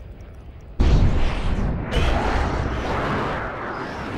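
Faint low rumble, then about a second in a sudden loud jet roar from an F/A-18 Super Hornet fighter making a low, fast pass, staying loud and easing off slightly toward the end.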